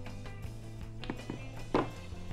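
Background music, with a few light knocks and then a louder thump near the end as an aluminium mat cutter is turned around and set down on a wooden table.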